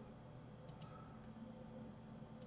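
Two faint, quick clicks of a computer mouse button, close together, about two-thirds of a second in, over near-silent room tone.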